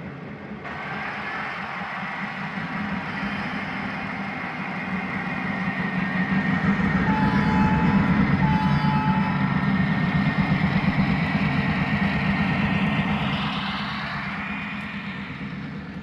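HO-scale GP9 model diesel locomotives running with their LokSound DCC sound decoders playing a steady diesel engine hum, along with the rumble of the train's wheels on the track. It swells as the locomotives pass close about halfway through, then fades as the cars go by.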